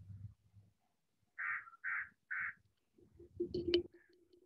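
A bird calling three times in quick succession, each call short and evenly spaced. Near the end comes a low shuffling noise with a sharp click.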